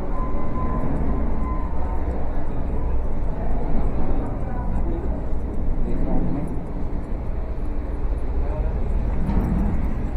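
Busy street and market ambience: indistinct voices of passers-by mixed with traffic noise and a steady low rumble.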